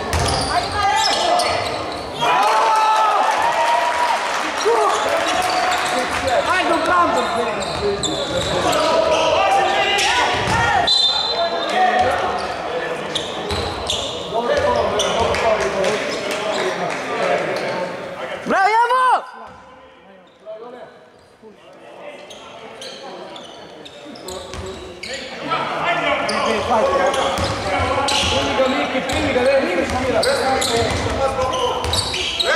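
A basketball being dribbled and bounced on a hardwood court amid players' shouts and crowd voices, echoing in a large sports hall. The sound quietens for a few seconds about two-thirds of the way through.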